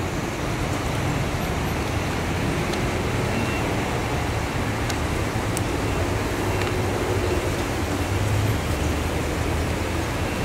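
Steady low rumbling outdoor background noise that rises slightly in the first second and then holds even, with no distinct events.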